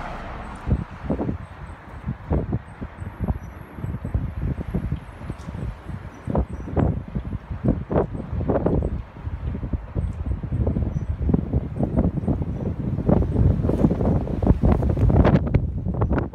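Strong gusty storm wind buffeting a phone microphone: a low, irregular blustering that swells and drops from gust to gust.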